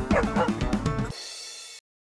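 A dog barking and yipping several times over music. About halfway through, the barks and music give way to a fading held note that cuts off shortly before the end.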